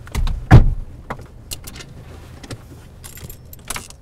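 A person climbing out of a parked car with handheld gear: a loud thump about half a second in, then scattered light clicks.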